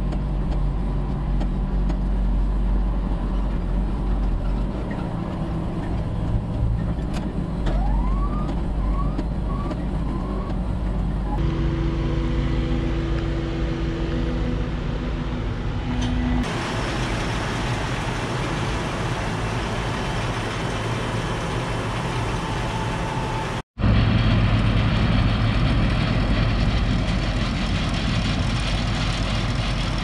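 Tractor engines and farm machinery running steadily, first heard from inside a tractor cab. The sound changes abruptly several times, with a steady whine in the middle part and a few short rising squeaks about eight to ten seconds in.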